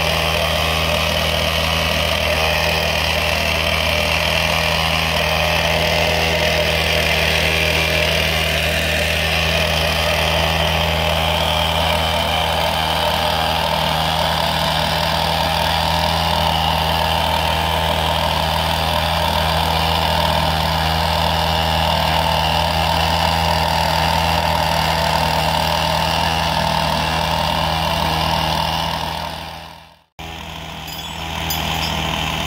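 Heavy crane truck's diesel engine running steadily at a constant speed, fading out near the end.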